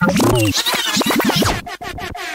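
Bassline house DJ mix with a scratch-like effect of rapidly sliding pitches, which cuts out briefly near the end.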